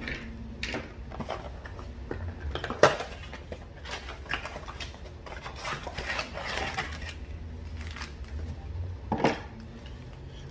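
A cardboard trading-card box and foil card packs being handled on a table: rustling and scraping with scattered knocks, the sharpest about three seconds in and another near the end.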